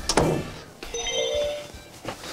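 A door thumps shut, followed by a short edited sound effect of a few held, bell-like tones.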